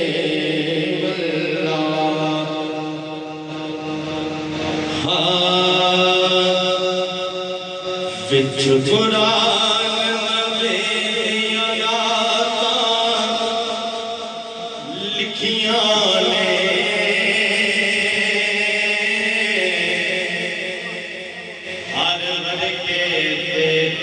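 A man chanting a naat, a devotional song in praise of the Prophet, into a handheld microphone. He sings long held, ornamented melodic lines, with a brief breath between phrases about two-thirds of the way through.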